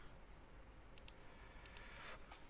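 A few faint computer-mouse clicks over near-silent room tone: two quick clicks about a second in, and two more shortly after.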